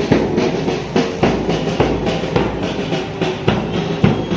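Music with a prominent drum-kit beat, repeated sharp drum hits over a dense, steady backing.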